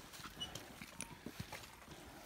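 Footsteps on a rocky dirt trail strewn with loose stones: a few faint, uneven scuffs and clicks.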